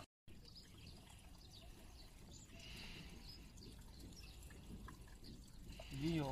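Quiet, faint snips of hand scissors cutting a small dog's long, matted fur.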